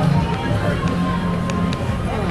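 Busy street-market ambience: people talking with music playing, and a steady held note through the middle.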